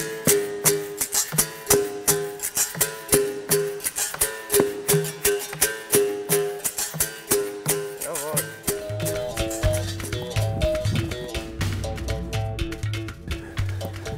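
Capoeira music: a berimbau's struck steel wire rings in a steady, even rhythm, alternating between two close notes with sharp strikes, over an atabaque drum. A little past halfway the music turns fuller, with a deeper bass line running under it.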